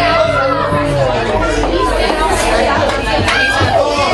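Crowd chatter in a bar: many voices talking over one another just after a live song has ended.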